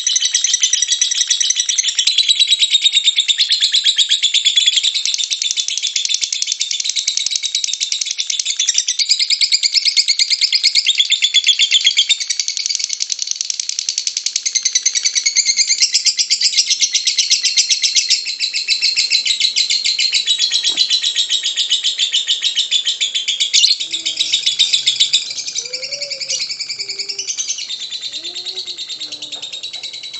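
Lovebird ngekek: a long, unbroken run of rapid, high-pitched chattering trills with no pauses.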